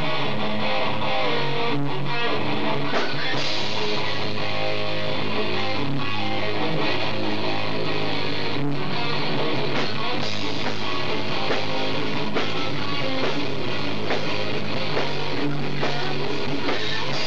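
Live rock band playing, with electric guitars and a drum kit.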